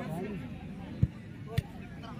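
Two sharp thuds of a football being struck, about half a second apart, over background voices.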